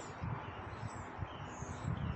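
Small birds chirping faintly in the background over a low, uneven rumble of wind on the microphone.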